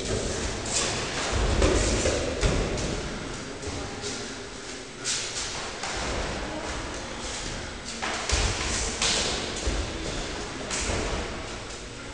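Full-contact kyokushin karate sparring: irregular thuds of punches and kicks landing on bodies, with the swish of cotton gi and bare feet on the mats.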